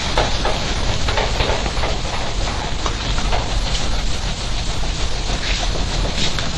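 Chalkboard eraser wiping across a chalkboard: a continuous scrubbing hiss made of repeated strokes.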